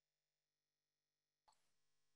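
Near silence: the video call's audio is muted.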